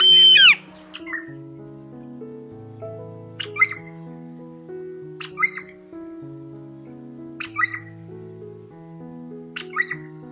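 A hawk's loud scream gliding down in pitch right at the start, then a bird's short call repeated four times about two seconds apart, over background music of slow, sustained notes.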